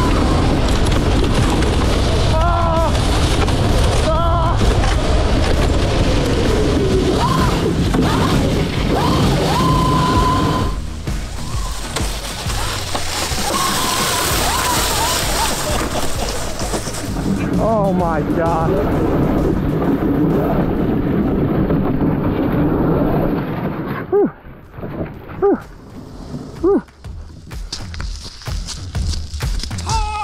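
Loud wind rumble and dirt spray on an onboard camera as an electric go-kart drives fast on a dirt road, with a motor whine rising and falling in pitch. The sound drops and breaks up in the last few seconds.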